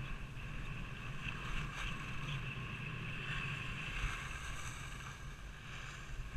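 Skis sliding steadily over a groomed snow piste, with wind noise on an action camera's microphone.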